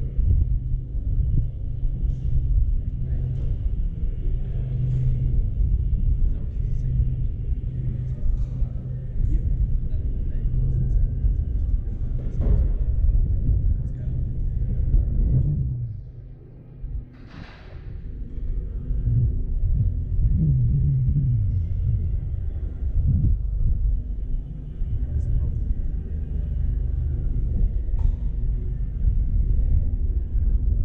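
Low, uneven wind rumble on an outside microphone, with muffled voices underneath, briefly easing just past halfway.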